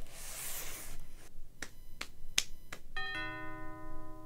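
Cardboard box rustling as it is rummaged through, then four sharp clicks, then a bright chord struck about three seconds in that rings on and slowly fades as music begins.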